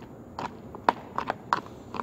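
A metal spoon mashing and stirring guacamole in a cut-off plastic bottle, clicking and knocking against the plastic about six times at an irregular pace.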